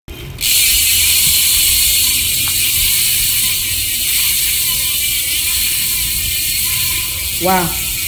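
Freehub pawls of a spinning Campagnolo rear wheel ratcheting as it coasts, a fast, continuous, very noisy high-pitched clicking that starts suddenly about half a second in.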